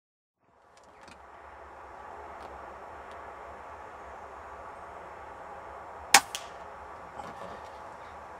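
Outdoor background fading in, then about six seconds in a single air rifle shot: one sharp crack, followed a fraction of a second later by a fainter smack of the pellet striking a rabbit at about 30 metres.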